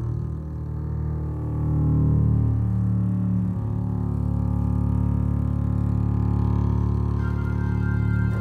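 Contemporary chamber ensemble music: sustained low notes from double bass and contrabassoon, shifting pitch a few times, with a higher woodwind note entering near the end.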